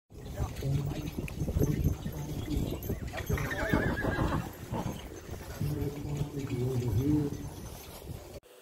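A draft horse team pulling a wagon, with scattered hoof and wagon knocks, and a horse whinnying, a warbling call, about three and a half seconds in.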